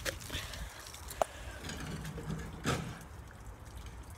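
Low rumble of wind and handling on a hand-held phone's microphone, with a short sharp click about a second in and a softer knock near three seconds.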